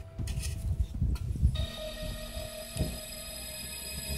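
Carbon-steel entrenching-shovel blade digging into dry, clumpy soil: several quick scraping, crunching strokes in the first second and a half and one more later, over background music.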